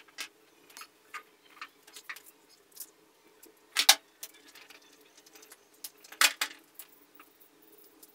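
Light clicks and knocks of plastic and metal parts being handled as a chainsaw converter's safety guard and bracket are fitted onto an angle grinder, with two louder clacks, one about halfway through and one about three quarters through.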